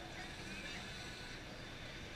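Faint, steady outdoor background noise with no distinct event.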